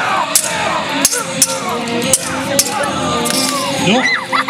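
Swords clashing in a staged foot duel: about six sharp clanks, spread unevenly. Under them run background music with a sustained drone and shouting voices.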